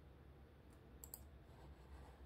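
Two quick computer mouse clicks about a second in, otherwise near silence with a faint low hum.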